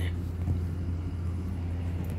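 Steady low hum with a faint even hiss behind it.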